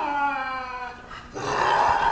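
Lynx yowling in anger: a long, drawn-out call that slowly falls in pitch and breaks off about a second in, then a second yowl begins shortly after.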